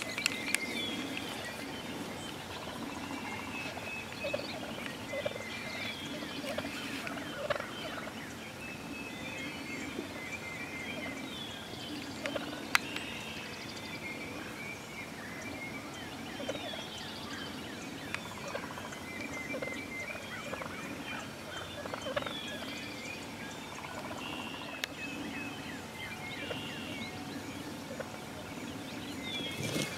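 Wild turkeys calling: gobblers and a hen giving gobbles and short repeated calls throughout, with one sharp click about halfway through.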